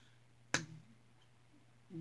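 A single sharp finger snap about half a second in, against faint room tone.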